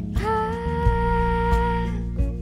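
A woman's voice singing one long held note, sliding up into it just after the start and then holding it steady until near the end, over low, soft musical accompaniment.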